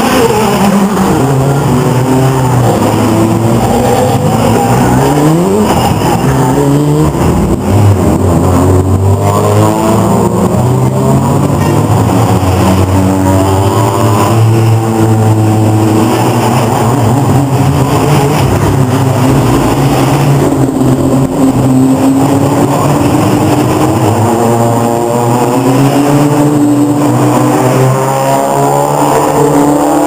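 Engines of several BTCC touring cars running loud as the cars pass one after another, their pitch rising and falling as each goes by.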